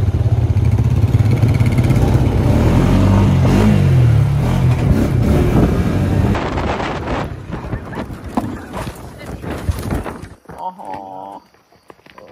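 ATV engine running loud under throttle, its pitch stepping up as it revs. Over the second half it gives way to rough rattling and knocking, then drops away sharply near the end.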